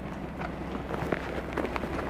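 A few irregular knocks and clanks, like boots and hands on the rungs of a metal vehicle ladder as someone climbs, over a steady low hum.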